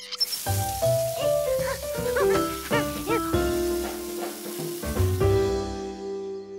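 Cartoon background music with quick bouncing notes that settle into a held tone, over a steady rushing hiss of water running from an outdoor spigot into a garden hose; the hiss stops shortly before the end.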